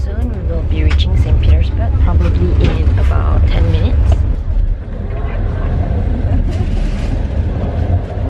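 Sleeper-train carriage running, a loud steady low rumble inside the corridor, with voices over it in the first few seconds.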